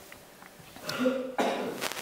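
A person clearing their throat with a short cough, about a second in.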